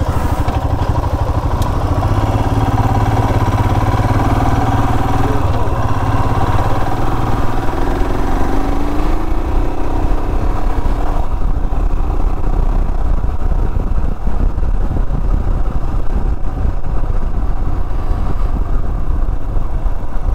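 Motorcycle engine running under way as the bike is ridden along a road, a steady engine note whose pitch rises about eight seconds in.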